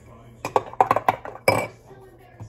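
A metal spoon stirring coffee in a ceramic mug, clinking against the sides in a quick run of about seven taps. The loudest clink, about one and a half seconds in, rings briefly.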